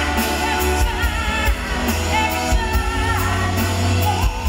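Live pop-rock band playing, with female voices singing over a drum kit with cymbals and a strong low end.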